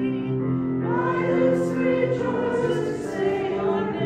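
Voices singing a slow hymn in long held notes, some with vibrato.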